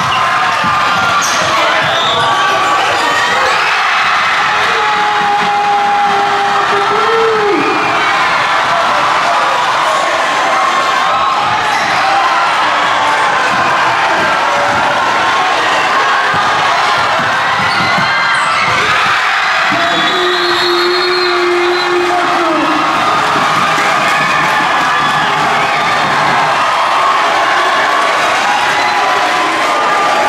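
Indoor high school basketball game sound: the ball dribbling on the hardwood court under a crowd cheering and shouting, with sneakers squeaking.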